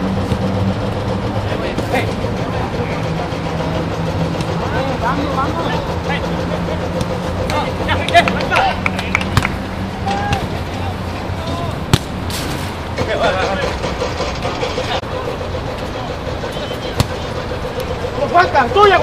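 Ambience of an outdoor five-a-side football match over a steady low hum: players' distant shouts and a few sharp knocks of the ball being kicked.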